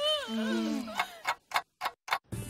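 A cartoon ticking sound effect: sharp, evenly spaced ticks, about three a second, starting about a second in.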